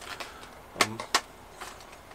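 A few light clicks and taps from a foam model-plane wing being handled and lifted, with one sharper click a little past halfway.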